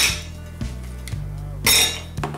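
Ice cubes dropped into an empty stainless-steel cocktail shaker, clinking against the metal: once at the start and again near the end. Background music plays underneath.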